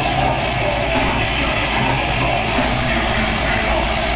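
A metal band playing live: loud, distorted electric guitar in a dense, unbroken wall of sound, heard from within the audience.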